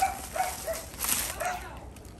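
An animal's short, high calls, four or five of them in quick succession, each a brief pitched note.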